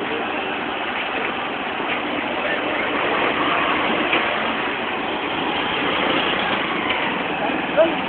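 Busy street noise: a steady mix of running vehicle engines and indistinct voices, with a short sharp sound near the end.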